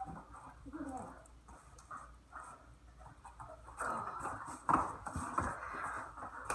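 A dog's paws pattering and scuffling on foam floor mats as it moves and jumps around its handler during heeling play, busier and louder in the last two seconds. A few soft words come from the handler about a second in.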